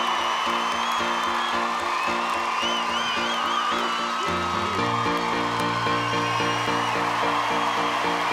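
Upbeat backing music with a steady pulsing rhythm, a deeper bass line coming in about halfway through. Over it, a studio audience cheers and claps with shouts and whoops.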